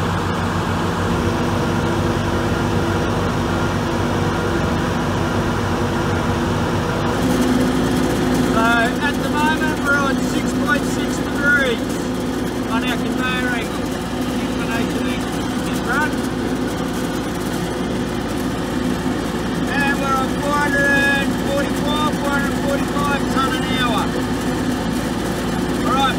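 Telestack radial stacker running with its conveyor: a steady machine hum with a constant low tone, its tone shifting about seven seconds in.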